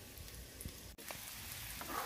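Sliced onions frying gently in vegetable oil in a pan over medium heat: a faint, steady sizzle that breaks off for an instant about halfway through.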